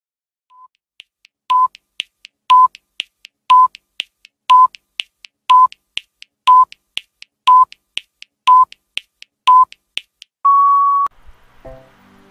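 Countdown timer sound effect: a short electronic beep once a second, about nine in all, with light ticks between them, ending in one longer, slightly higher beep. Soft music begins near the end.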